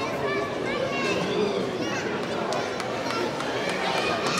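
Indistinct voices calling and talking at a distance, over a steady background noise haze.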